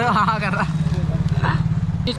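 A motor vehicle engine running close by, a steady low rumble with a fast, even pulse. Voices and laughter are heard over it in the first half-second.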